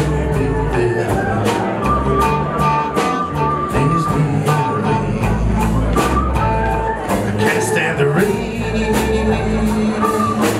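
Live band playing a song with electric guitars, bass, keyboard and drums keeping a steady beat.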